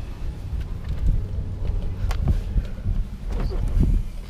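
Wind buffeting the microphone: an uneven, gusting rumble with a few faint knocks.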